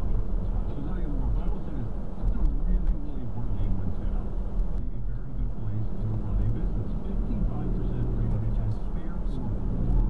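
Inside a moving car's cabin: indistinct radio talk over a steady low rumble of engine and road noise.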